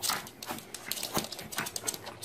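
Small dog licking a man's face: a quick, irregular run of wet clicks and smacks.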